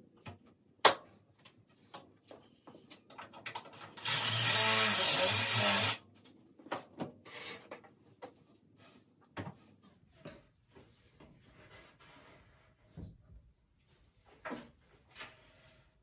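A sharp knock about a second in. Then a drill boring a pocket hole through a Kreg pocket-hole jig into the plywood for about two seconds, its motor whine wavering in pitch under load. Scattered clicks and knocks come from the board and jig being handled.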